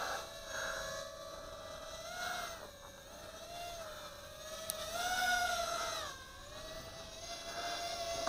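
Eachine Racer 180 tilt-rotor drone's four 2205 brushless motors and propellers whining in flight at a distance, the pitch wavering up and down with throttle. The whine swells and rises about five seconds in, then dips briefly.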